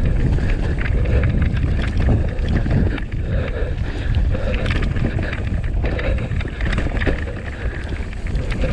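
Mountain bike ridden fast down rough, muddy singletrack, recorded on a GoPro: loud wind and tyre rumble on the microphone, with constant clicks and rattles over the bumps. A squeak from the GoPro mount recurs about once a second.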